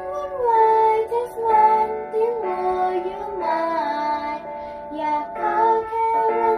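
A young girl singing the pre-chorus of a pop song in a voice lesson, holding long notes and sliding between pitches.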